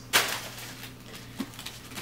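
A short rustle of packaged stationery being handled as one item is set down and another is taken from the shipping box, then quiet with a steady low hum and one small click near the end.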